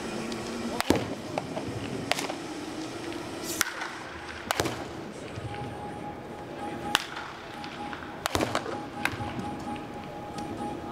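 Wooden baseball bat hitting pitched balls in a batting cage: about seven sharp cracks at uneven intervals, a second or so apart, over background music and chatter.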